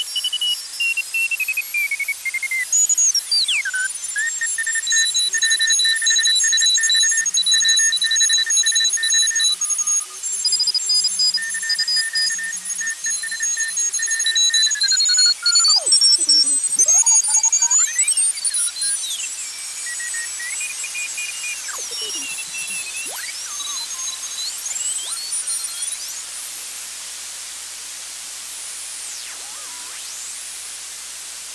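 A 12AU7 tube regenerative shortwave receiver tuned across the 40-metre band. Several Morse code (CW) signals come through as keyed beep tones at different pitches. From about halfway, whistles glide up and down as the dial sweeps through stations, fading to hiss near the end.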